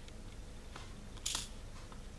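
Faint small clicks of a diamond-painting drill pen picking up square resin drills from a plastic tray and pressing them onto the adhesive canvas, with one brief hiss about a second in.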